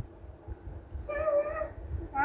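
A single high, drawn-out cry, about a second in and lasting under a second, over low rumbling noise from the phone being handled.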